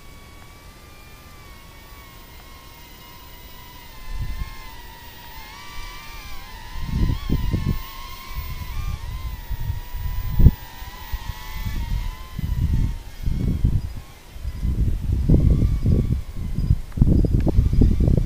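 A small toy quadcopter's propellers whining, their pitch wavering up and down as the throttle changes, fading after about twelve seconds. From about four seconds in, low rumbling gusts on the microphone come and go and drown it out, with one sharp thump near the middle.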